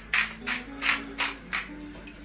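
Salt dispensed over a plate of food in about five short gritty bursts, roughly three a second, with soft background music underneath.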